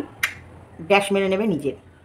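A woman speaking a few words, with one sharp click about a quarter second in.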